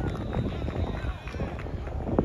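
Indistinct chatter of voices from players and onlookers on an outdoor football field, over a low rumble with scattered short knocks.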